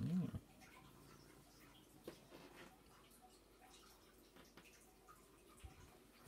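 A domestic cat gives one short meow that rises and falls in pitch, followed by faint room tone with a few light clicks.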